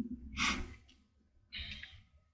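A person breathing into a close microphone: two short breaths about a second apart.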